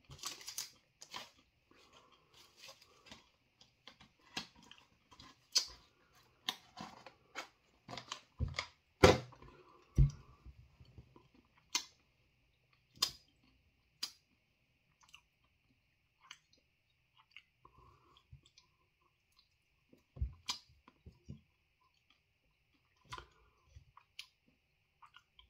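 Mouth-closed chewing of a crunchy spicy chip: a run of short crisp crunches, thick and loudest in the first ten seconds, then thinning to occasional crunches.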